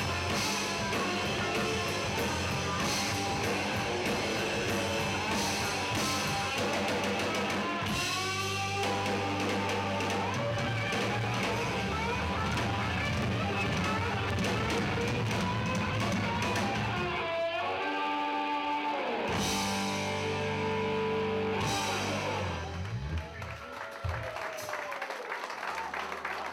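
Live rock band of electric guitars and a drum kit playing loud through amplifiers, with a passage of held guitar notes near the end. The music drops away about three seconds before the end.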